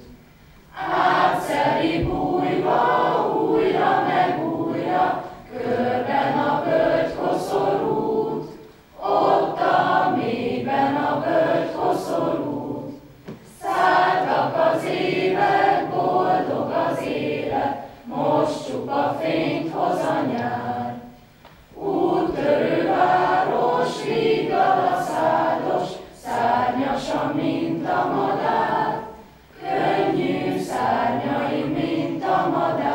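Mixed student choir singing without accompaniment, in sung phrases of a few seconds each, separated by short breaks for breath.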